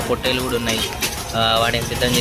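Several men's voices talking in a street crowd, with one louder drawn-out call about halfway through.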